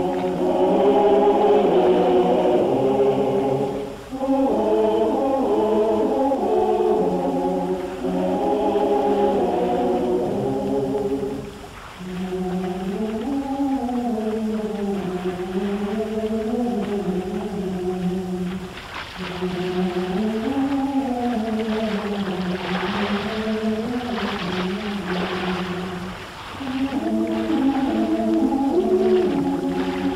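Wordless choir singing a slow, sustained melody in phrases a few seconds long, with short breaths between them. In the middle stretch the harmony thins to a single rising-and-falling melodic line before the full chords return near the end.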